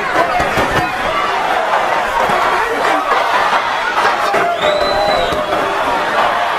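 Large arena crowd during a boxing bout, a steady mix of cheering and chatter, with voices running through it. A short high whistle-like tone comes through about five seconds in.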